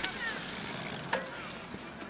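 Steady outdoor background noise as a cyclocross bike rides past over grass and mud, with faint distant voices and one short sharp sound a little over a second in.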